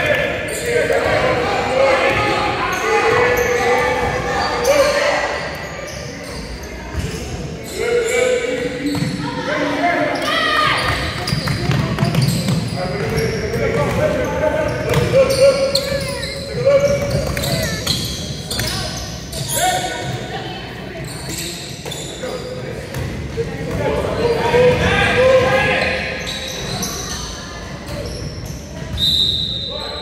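Basketball bouncing on a hardwood gym floor during play, with spectators' and players' voices calling out throughout in the echo of a large hall. A short high tone sounds near the end.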